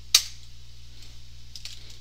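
Computer keyboard being typed on: one sharp, loud keystroke just after the start, then a few faint key taps near the end, over a low steady hum.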